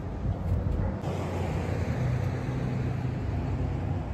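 Street traffic: a car driving past, its road noise swelling about a second in over a low steady engine hum.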